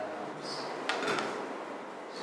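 Quiet room tone with a single sharp click or knock about a second in.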